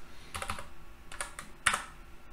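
Typing on a computer keyboard: several separate, unevenly spaced key clicks.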